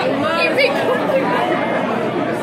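Several people chattering and talking over one another.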